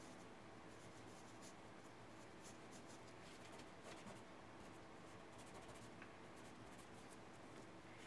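Faint scratching of a graphite pencil on drawing paper, followed by a fingertip rubbing the graphite to blend the shading.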